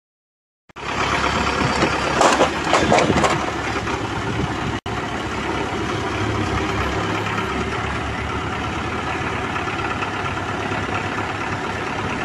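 Heavy diesel vehicle engine idling steadily, with a patch of knocking and rattling about two to three seconds in.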